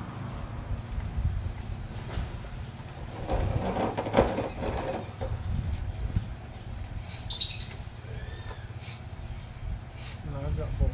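Handling noises from an air rifle stock being fitted and turned in the hands, densest about three to five seconds in, over a steady low rumble; a few short bird chirps near the end.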